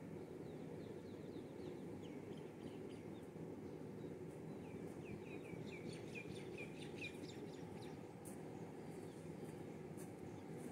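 A bird calling, a run of short, falling chirps that comes faster and closer together about five to seven seconds in, over a steady low outdoor background noise.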